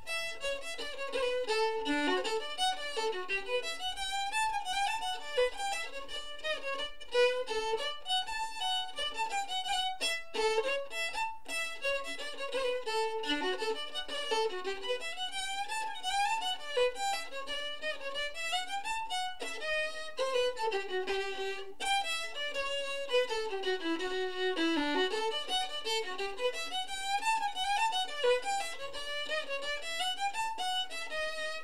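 Unaccompanied violin playing an 18th-century English country dance tune, a continuous bowed melody of quickly moving notes.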